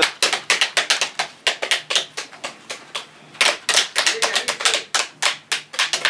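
Rapid, irregular smacks and taps of several people working pomegranates by hand, breaking the fruit and knocking the seeds out into basins, with a short pause about halfway through.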